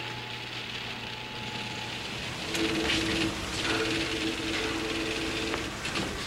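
A train passing close by: a steady rumbling hiss, with a two-note horn-like tone held for about three seconds in the middle.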